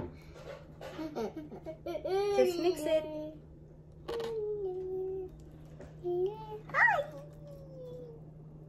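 A young child's high-pitched wordless sing-song and babbling, with a held note in the middle and a rising-then-falling glide near the end, over a few light clicks of a spatula stirring batter in a stainless steel bowl. A faint steady hum runs underneath.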